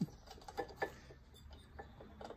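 A few light clicks and taps from a new ignition coil and its mounting bolts being handled and finger-tightened against a Lawn-Boy two-stroke mower engine. The sharpest click comes right at the start.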